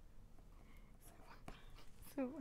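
Near silence: studio room tone with faint whispered talk.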